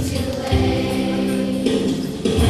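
Children's choir singing, holding one long note from about half a second in until near the end.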